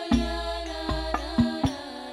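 Al-Banjari ensemble: hand-struck terbang frame drums playing a rhythm of sharp slaps and deep, ringing bass strokes, under women singing a devotional sholawat melody.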